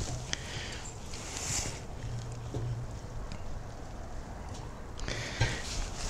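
Low, steady outdoor background with a few faint, light clicks, from the brisket's metal hook touching the rebar bars of a Pit Barrel Cooker as the meat is turned.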